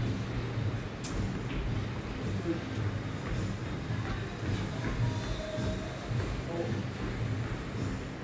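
Steady gym background of low rumble with faint, indistinct voices and some music, with a single sharp knock about a second in.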